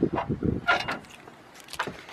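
A backpack being grabbed and pulled out: fabric rustling and straps and buckles knocking, with handling noise on the camera. The bumps are busiest in the first half-second, with a few clicks near the end.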